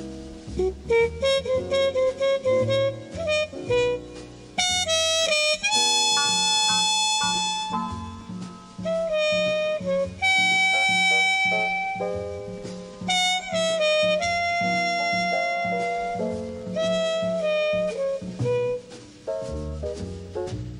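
Small-group jazz recording: a horn plays a melody of long held notes over a lower bass line, with shorter runs in between.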